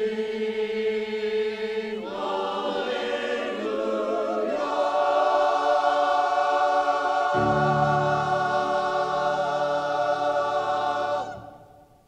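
Church choir singing the closing phrase of an anthem, ending on a long held chord. Low notes join beneath the chord about halfway through, and the choir cuts off together about eleven seconds in.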